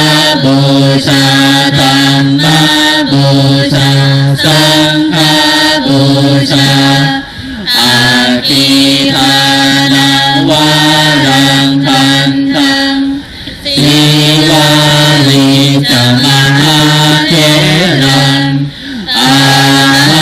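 Buddhist chanting led by a monk into a microphone: long phrases held on a steady monotone pitch, with short breaks for breath about every five to six seconds.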